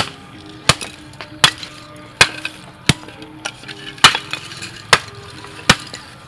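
Hammer striking sticks of lump charcoal to break them into chunks: about eight sharp cracks, roughly one every three-quarters of a second. Faint background music underneath.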